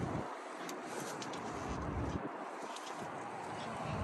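Steady low outdoor hiss with light wind on the microphone, with a few faint clicks from the pickup's door handle and latch as the driver's door is pulled open.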